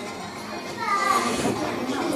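Background murmur of other voices in a hall, with a fainter, higher voice rising and falling briefly about a second in.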